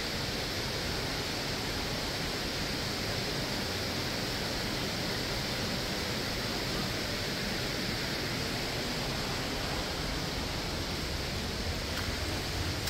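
Steady rushing of a nearby waterfall, an even unbroken noise.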